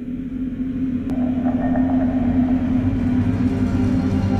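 Low rumbling drone of a dark, ominous film score, swelling up over the first couple of seconds and then holding, with a steady low tone under it. A soft click about a second in brings in a fluttering higher texture.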